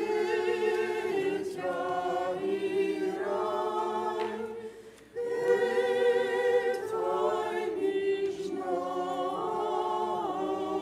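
Church choir singing an unaccompanied liturgical chant in two long phrases, with a brief break about five seconds in.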